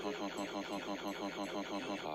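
A character's voice laughing, a fast unbroken "ha-ha-ha" of about eight syllables a second, played from a television.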